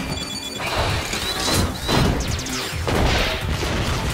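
Animated-film soundtrack: music mixed with crash sound effects, dense and busy throughout.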